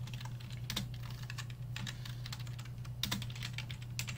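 Typing on a computer keyboard: a run of quick, irregular keystrokes, over a steady low hum.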